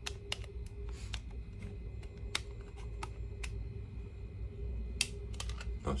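Scattered light clicks and taps from handling a plastic CompactFlash-to-IDE adapter enclosure holding a CompactFlash card, over a steady low hum.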